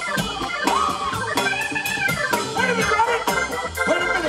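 A live soul band plays an instrumental passage with no vocals. An organ-like keyboard lead with bending pitch lines sits over a steady groove of congas, drum kit and bass.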